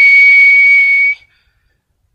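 A person whistling one steady high note with some breath hiss, cutting off a little over a second in. The note is close to a pure tone: its Fourier transform shows a single peak.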